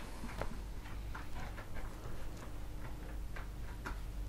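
Quiet room tone with faint, irregular light clicks and ticks, a few each second.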